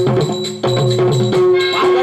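Stage-drama accompaniment: a pair of hand drums played in a quick rhythm over a steady harmonium drone, with a short break just after half a second. A gliding melody line comes in near the end.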